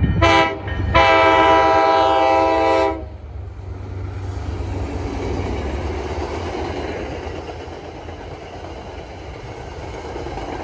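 MBTA commuter train's locomotive horn sounds a short blast, then a longer blast of about two seconds. The train's coaches then pass close by with a steady noise of wheels on rail that slowly fades.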